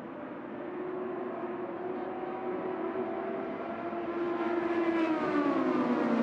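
A pack of IndyCar race cars' 2.2-litre twin-turbo V6 engines at full speed, a steady high whine that grows louder as the field comes closer. About five seconds in, the pitch falls as the cars pass.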